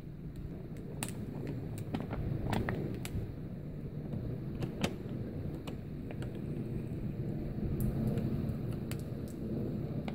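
A Filterpen straw filter being screwed onto a thin plastic water bottle: scattered small plastic clicks and crinkles over a low, steady rumble.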